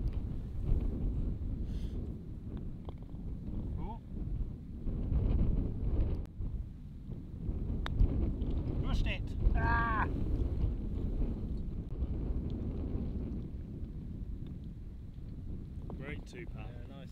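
Wind buffeting the microphone in a steady low rumble, with a sharp click about eight seconds in as a putter strikes a golf ball. Shortly after comes a brief pitched call that rises and falls.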